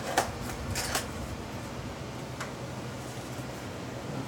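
Small cardboard box and its packing being handled and opened: a few short crinkles and clicks in the first second and one more about two and a half seconds in, over a steady low room hum.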